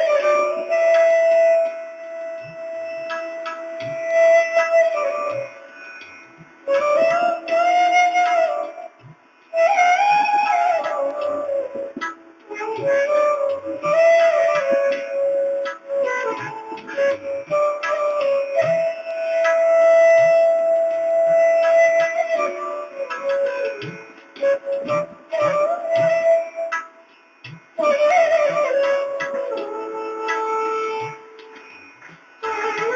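Instrumental music led by a flute playing a slow melody with gliding notes, in phrases broken by short pauses.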